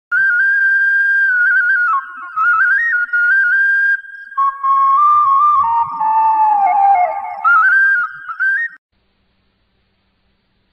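Intro music: a high, ornamented solo melody on a flute-like wind instrument, moving in quick stepwise notes, which cuts off abruptly near the end.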